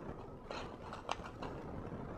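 Faint, scattered small clicks of fingers handling a plastic packaging tray while picking out tiny screws.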